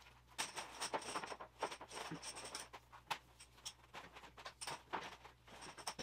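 Green pressure-washer hose being uncoiled and straightened by hand: faint, irregular rustles, scrapes and light knocks as the coils are pulled loose.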